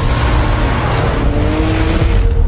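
Porsche 911 Dakar sliding on dirt: a loud rush of tyre and gravel noise with the engine note slowly rising, fading near the end, over music.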